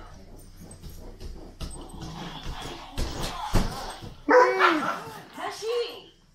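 A dog gives a run of short, whining barks that rise and fall in pitch over the last two seconds. Shortly before, there are two dull thumps, a child landing on gym mats.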